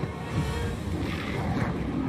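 Storm sound effects from a TV soundtrack: a dense, steady wash of wind and deep rumbling, a little louder from about half a second in.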